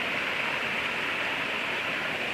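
Steady rushing of river water spilling over a small rocky cascade into a pool, an even sound with no breaks.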